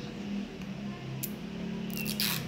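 Fingernails picking and scraping at a bath bomb ball, with one brief scratchy hiss a little past the middle, over a low steady hum.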